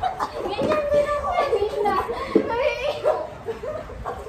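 A child's high-pitched voice, talking and exclaiming in drawn-out, wavering tones with no clear words.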